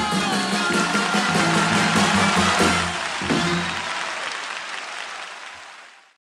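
The final held sung note ends about half a second in over the pit orchestra's closing chord. An audience applauds, strongest in the middle, and everything fades out near the end.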